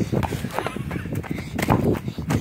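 Footsteps of someone running across a grass lawn: a quick, irregular run of soft thuds.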